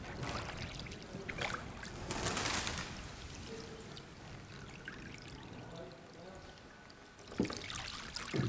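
A gondola oar working in canal water makes splashing and swirling sounds, with a louder wash about two seconds in. The water is quieter through the middle, and a short knock comes near the end.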